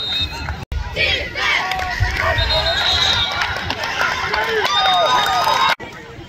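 Football spectators shouting and cheering, many voices overlapping. The sound cuts out briefly twice.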